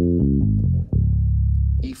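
Five-string electric bass playing the descending half of a two-octave D-flat major arpeggio. A quick run of plucked notes steps downward and lands about a second in on a low D-flat, which is held for most of a second.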